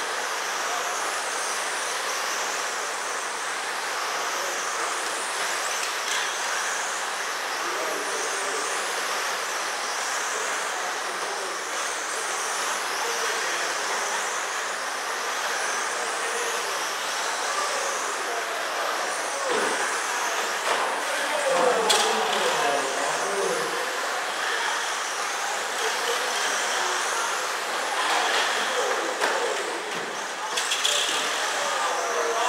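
Several 1/10-scale electric RC sprint cars running laps on a dirt oval: a steady high whine of motors and gears that rises and falls as the cars pass, over the hiss of tyres on dirt. A sharp knock about twenty-two seconds in is the loudest moment.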